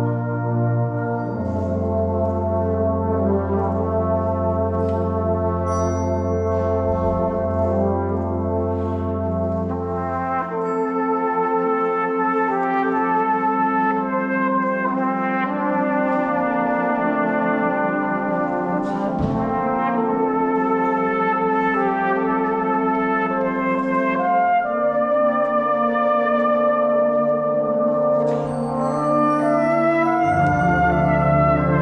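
Brass band playing a slow, lyrical solo feature: a solo brass line over held chords. A low bass note holds for about the first ten seconds, then drops out.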